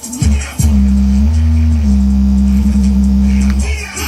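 Bass-heavy music played loud through a Sony SS-VX333 speaker's woofer: a couple of short deep bass hits, then one long deep bass note held for about three seconds, stepping up slightly in pitch in the middle.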